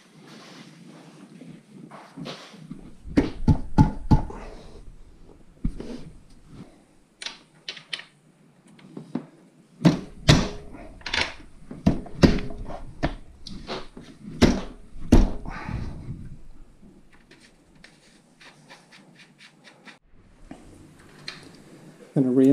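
Irregular knocks and clunks of the rear wheel and its hardware as the motorcycle wheel is lifted and worked into place. Heavier clunks come a few seconds in and again from about ten to sixteen seconds, followed by lighter ticks.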